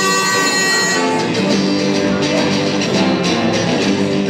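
Live music on a strummed Stratocaster-style electric guitar, with steady held notes and chords playing throughout.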